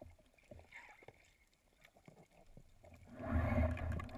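Underwater sound heard through a speargun-mounted camera: faint scattered clicks and ticks in the water, then, about three seconds in, a louder rush of churning water and bubbles with a deep rumble lasting about a second, as the diver kicks up toward the surface.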